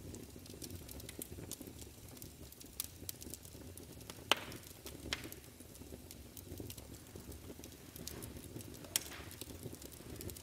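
Quiet crackling fire in a fireplace: a low steady rustle with irregular sharp pops and snaps, the strongest about four seconds in and again near the end.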